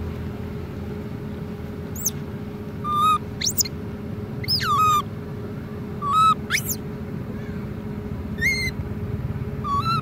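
Baby macaque giving a series of short, high-pitched squeaks and sweeping cries, spaced about a second apart, over a steady low background hum.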